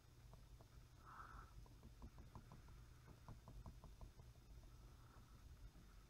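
Near silence, with faint taps and scratches of a Surface Pro 3 pen nib on the tablet's glass screen as short strokes are drawn: a brief soft scratch about a second in, then a run of quick light ticks.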